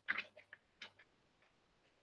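A few faint, short clicks: one at the very start, then two fainter ticks about half a second and just under a second in.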